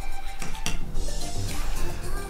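Background music, with a few light clinks of a spoon against a small glass container as baking soda is scooped out; the clearest clink comes about two-thirds of a second in.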